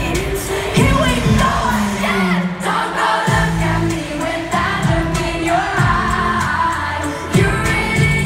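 Live pop song played over an arena PA, heard from the stands: a sung melody over a band with deep bass hits that drop in pitch roughly once a second.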